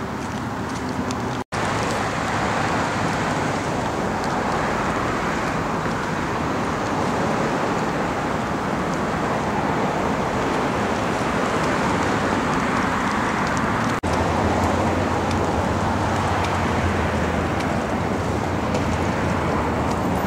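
Steady outdoor background noise, a constant rushing hiss, broken by two very brief dropouts, one about a second and a half in and one about two-thirds of the way through.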